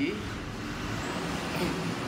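Steady background hum and hiss with no distinct events, with a faint trace of a man's voice near the start.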